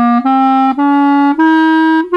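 Five-key wooden period clarinet playing a slow rising run of about four separate low-register notes, each about half a second long, stepping up in pitch. The run climbs to the extra note that the instrument's added key gives.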